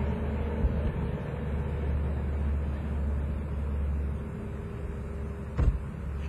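Steady low rumble of vehicle traffic, with a single short knock near the end.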